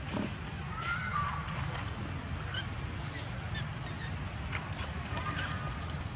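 Outdoor background of a steady high hiss over a low rumble. A few short, faint calls come through, one about a second in and another near the end.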